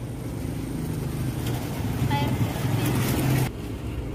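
Street traffic: a motor vehicle's engine running steadily and growing louder, then stopping abruptly near the end. A faint voice is heard briefly about two seconds in.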